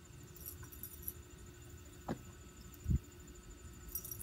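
Quiet outdoor background: a steady low rumble and a faint, steady high-pitched whine, broken by a brief knock about two seconds in and a louder dull low thump near three seconds.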